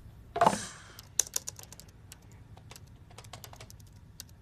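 Laptop keyboard typing: quick, irregular key clicks from about a second in until near the end. Just before the clicks there is one brief, louder sound.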